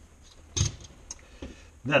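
A single short knock about half a second in, then a fainter tick: a tool handled on the leather-covered workbench. Otherwise quiet room tone.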